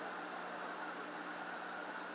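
Steady high-pitched drone of night insects, with no break or pulse, over a constant hiss and a faint low hum.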